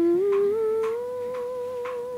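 A voice humming one long note through closed lips, sliding upward and then holding steady. A clock ticks faintly about twice a second underneath.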